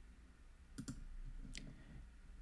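Two quiet clicks of a computer mouse, about three-quarters of a second apart, over a faint low hum.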